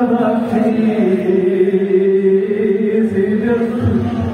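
A Balti qasida being chanted: one voice holds a long drawn-out note that sways slowly in pitch, and the note ends near the close.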